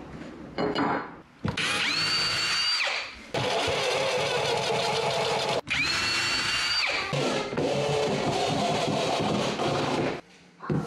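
Cordless drill/driver driving screws through a steel mounting plate into the underside of a hickory desktop. It runs in several bursts of one to two seconds with short pauses between, and two of the bursts begin with a rising whine as the motor spins up.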